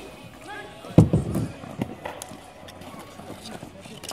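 Ball hockey play on an outdoor rink: a loud sharp hit about a second in, with a low ringing after it like ball or stick against the boards, then a few lighter stick clacks, with faint players' voices.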